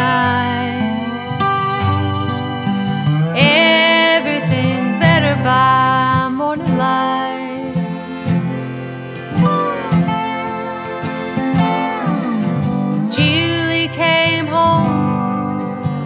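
Instrumental break of a country song played live on acoustic instruments: a lap slide guitar plays a melody with gliding, bending notes over strummed acoustic guitar and sustained accordion chords.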